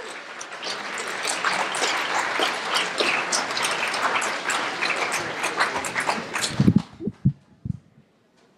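Audience applauding at the end of a talk, dying away about seven seconds in, with a few low thumps as it fades.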